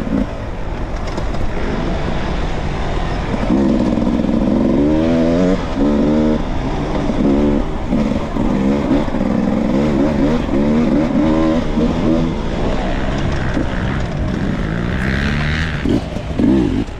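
Dirt bike engine under way on a dirt trail, its pitch rising and dropping back again and again as the throttle is opened and closed.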